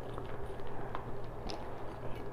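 Faint handling noise from a canvas tote bag and its metal chain being moved: a few light, scattered clicks and rustles over a steady low hum.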